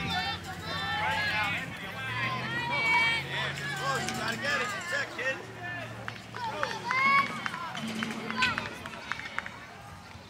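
Several voices calling and shouting at once across a youth baseball field, some of them high-pitched, with no clear words. A faint steady low hum runs underneath.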